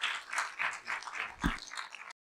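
Small audience applauding: quick, overlapping individual hand claps, with a low thump about one and a half seconds in.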